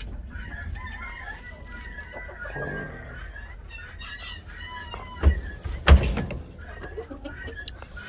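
Chickens in a coop: a rooster crowing and hens clucking. Two sharp knocks about five and six seconds in are the loudest sounds.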